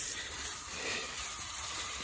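Garden hose spraying water onto the ground and plants at the base of a mango tree: a steady hiss.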